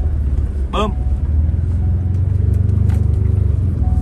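Pickup truck engine heard from inside the cabin while the truck is driven on a sand track, a deep rumble that builds up through the middle as it accelerates.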